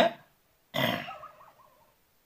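The tail of a spoken "okay" fades out at the start. About three quarters of a second in comes a short, breathy vocal sound from a person, grunt-like, which fades away over about a second.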